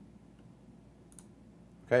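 A single faint computer mouse click about a second in, over quiet room tone; a man says "okay" at the very end.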